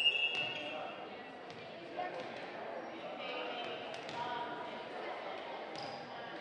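Volleyball bounced a few times on a hardwood gym floor, sharp thuds that echo in the large hall, under a murmur of spectators' voices.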